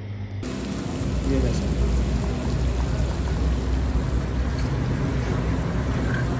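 Chicken curry sizzling in a cast iron karahi as it is stirred with a metal spatula, over a steady low rumble. The sound sets in suddenly less than a second in.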